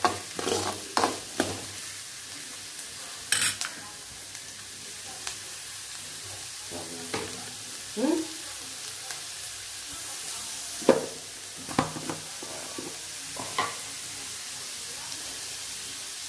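Chopped onions sizzling steadily in hot oil in a metal kadai. A steel spoon scrapes and clicks against the pan as they are stirred, mostly in the first few seconds, with occasional taps later.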